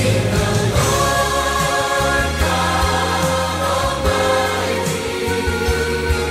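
Choir singing a praise-and-worship song in long held notes over instrumental accompaniment with a steady bass line.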